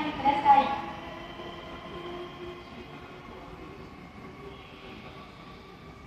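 Railway station platform ambience: the tail of a public-address announcement in the first second, then a steady hum with a few faint held tones.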